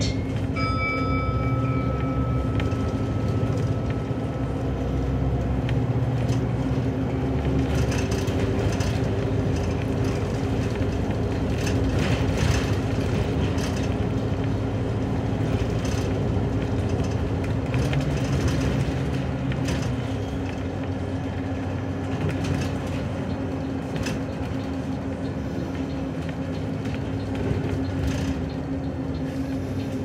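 City bus driving, heard from inside at the front of the cabin: a steady hum over low engine and road rumble. A faint high tone fades out over the first few seconds.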